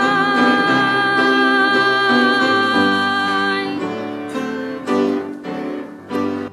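A woman holds the final sung note of a gospel solo, with vibrato, over piano accompaniment. Her voice stops a little under four seconds in, and the piano closes with a few struck chords that ring out.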